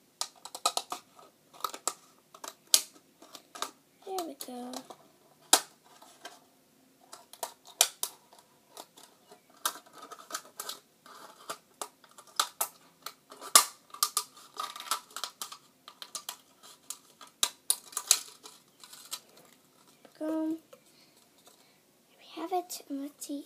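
Scissors cutting into a thin plastic cup: a long run of sharp, irregular snips. A short voice sound comes about four seconds in and again near the end.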